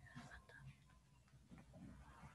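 Near silence: faint room tone with faint, indistinct voice sounds.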